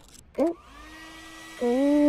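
Hair dryer starting up about half a second in and running with a steady whine and hiss, just after a short squeak. From about a second and a half in, a loud, wavering, moan-like sound rises over it.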